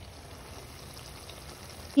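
Faint, steady hiss of background noise with no distinct sounds in it.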